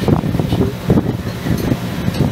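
Low rumbling noise on the microphone, like wind or handling noise, with uneven low thumps.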